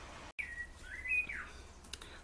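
A bird chirping faintly: one thin whistled call that dips, climbs and drops again over about a second.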